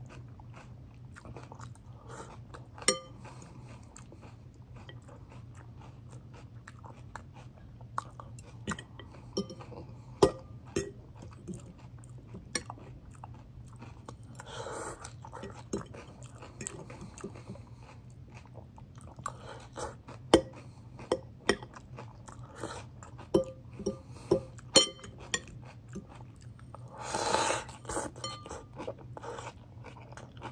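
A person chewing a mouthful of salad close to the microphone, with irregular sharp crunches as the greens are bitten and chewed. About halfway through and again near the end there is a longer rustling hiss lasting about a second.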